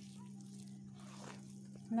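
Hand mixing flour into a soft dough in a wide bowl: faint rubbing and squishing, over a steady low hum.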